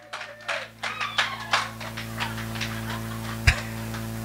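Electronic keyboard holding a steady low sustained chord, with scattered hand claps in the first couple of seconds and a single thump about three and a half seconds in.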